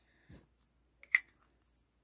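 Scissors snipping through a yarn end: one sharp snip about a second in, with faint handling sounds around it.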